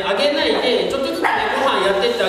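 Small poodles whining and yipping while a man talks.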